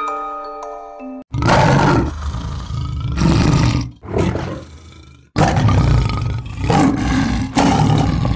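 A loud roar sound effect, coming in three goes: a long roar from about a second in, a short one near the middle, and another long one from about five seconds in. It is preceded by a few chiming bell-like notes that stop just after the start.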